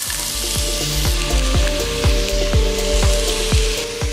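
Diced vegetables sizzling in hot olive oil in a pot, the sizzle cutting off just before the end. Background music with a steady thudding beat about twice a second plays underneath.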